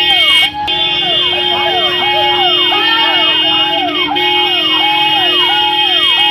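Ambulance siren sounding in a fast repeating yelp, about two quick rising-and-falling sweeps a second, over a steady tone.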